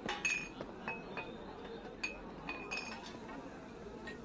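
Glassware clinking: a string of about eight light, short clinks, each with a brief high ring, scattered through the background of a busy drinking hall.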